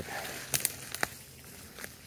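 Footsteps through woodland leaf litter and twigs: a few irregular, crisp crunching steps.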